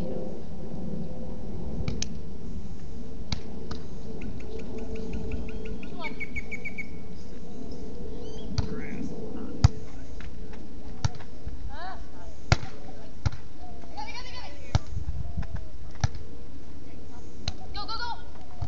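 A beach volleyball being struck by players' hands and forearms in a rally: about seven sharp smacks at uneven intervals through the second half, the loudest about ten seconds in. Short calls from the players fall between the hits, over a steady hiss.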